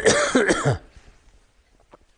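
A man coughs and clears his throat in one loud, rough burst lasting under a second. A faint click follows near the end as he picks up a thermos flask.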